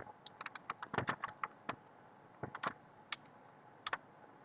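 Typing on a computer keyboard: a run of irregular keystrokes, a short pause about halfway through, then a few single taps near the end.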